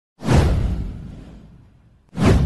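A whoosh sound effect with a deep low end for an animated title graphic. It swells in suddenly about a quarter second in, then fades away over about a second and a half.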